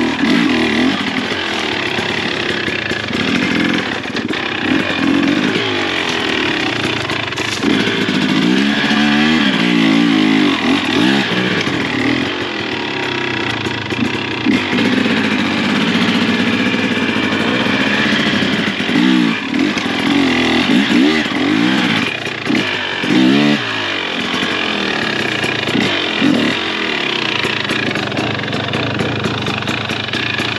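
KTM XC 300 TBI single-cylinder two-stroke dirt bike engine, revved up and down in short bursts of throttle as it is ridden slowly over rough, technical ground. There are quick blips of the throttle near the end.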